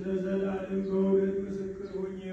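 A man intoning an Ethiopian Orthodox liturgical chant, held almost on one pitch with short breaks between phrases.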